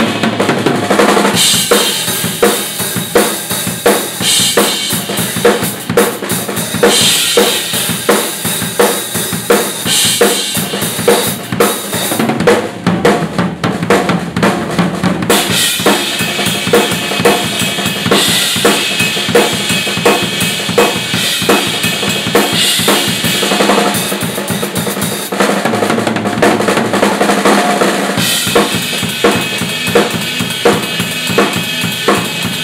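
A DW acoustic drum kit played hard in a studio room: a dense, driving beat of kick drum, snare and cymbals. The cymbals drop out for a few seconds midway, then come back in.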